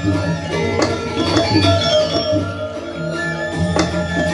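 Balinese gamelan playing barong music: kendang drums beating over ringing bronze metallophones, with a few sharp strokes standing out.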